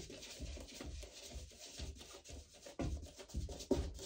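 Foam brush spreading matte acrylic gel medium over a gesso panel: a run of soft, uneven rubbing strokes.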